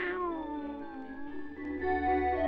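A long, drawn-out cartoon-cat meow in a human voice, sliding downward in pitch and fading, over background music. The closing music swells near the end.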